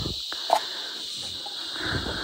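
A steady, high-pitched chorus of insects, with one sharp snap about half a second in and some rustling of branches near the end.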